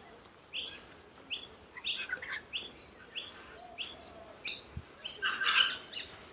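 A bird calling over and over, short high chirps at about two to three a second.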